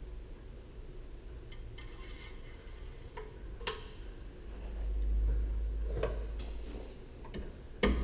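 Light clicks and knocks of hands working in a Chevrolet Ecotec engine bay as the oil dipstick is pushed back into its tube, a few scattered ticks, with a sharper knock near the end. A low rumble swells up around the middle.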